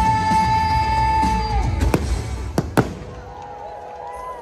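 Fireworks shells bursting over show music: the music ends on a long held note about a second and a half in, then three sharp bangs go off in quick succession about two to three seconds in, and it turns quieter afterwards.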